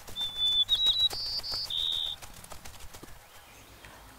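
A quick run of five or six short, high whistled notes at slightly different pitches over about two seconds, with faint light ticking behind them.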